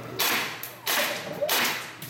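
Hose-fed airsoft rifle firing three short bursts about two-thirds of a second apart, each a sharp, hissing crack of air.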